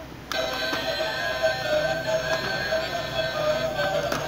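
A toy ball-grabber machine's built-in electronic jingle, a beeping tune that starts suddenly a moment in and plays on steadily.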